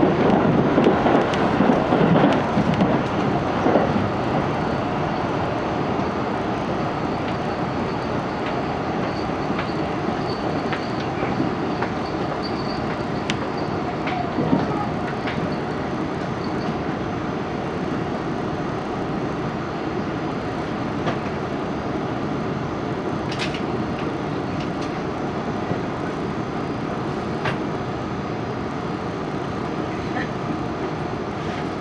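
Cabin running noise of a 373-series electric express train at speed: a steady rumble of wheels on rail, heard from inside the car. A few sharp clicks come near the end, and a faint high whine runs through the middle.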